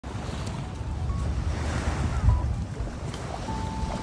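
Small waves washing up a sandy shore, with wind rumbling on the microphone and a louder gust a little past halfway. A few faint thin tones sound over it, one held near the end.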